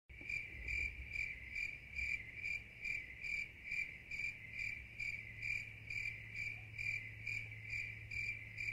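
An insect chirping steadily, about three high chirps a second, over a faint low hum.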